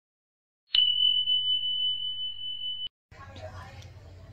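Bell sound effect: a sharp struck ding that rings on as one steady high tone for about two seconds, then cuts off suddenly. Faint room noise follows near the end.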